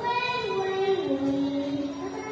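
A young girl singing solo, holding long notes that step down in pitch, the last and lowest held for nearly a second.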